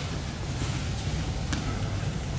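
Steady low rumble of room background noise, with a single faint tap about one and a half seconds in.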